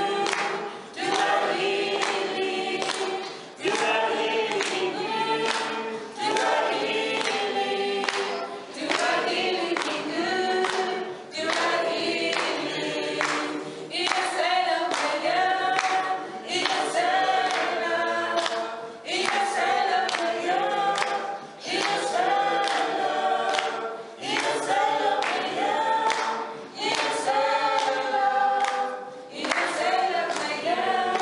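A mixed group of men and women singing in harmony, in phrases about two seconds long, with hand claps keeping time.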